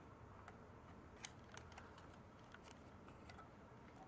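Faint scattered clicks and ticks of thin hinged aluminium panels being folded together by hand into a miniature twig stove, over near silence.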